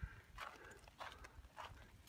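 Faint footsteps: a soft thump, then about three light steps roughly half a second apart, as the camera operator walks up to the trailer door.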